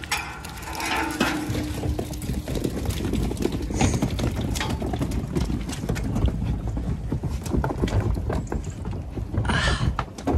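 Zwartbles lambs' hooves knocking on a livestock trailer's ramp and floor as the flock trots aboard: a dense, irregular run of thuds and knocks.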